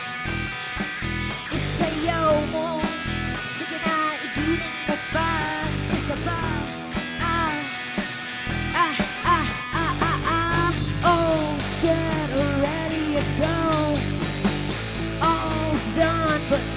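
Live rock band playing an instrumental passage on electric guitar, bass guitar and drum kit, with a lead melody that bends and slides in pitch. The low end and drums get fuller about ten seconds in.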